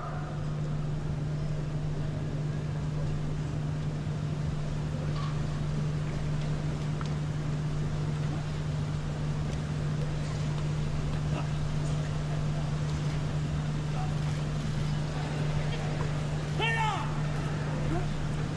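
Open-air broadcast ambience with a steady low hum and no clear nearby events. A short voice calls out once near the end.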